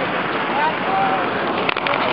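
Wind blowing across the camcorder microphone with a steady rushing noise, with faint voices in it and a few knocks from the camera being handled near the end.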